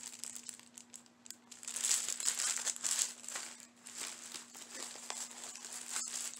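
Plastic packaging crinkling and rustling as items are handled, in irregular bursts from about two seconds in, over a faint steady hum.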